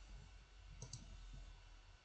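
Two faint, sharp clicks in quick succession about a second in, a computer mouse double-click, against near-silent room hum.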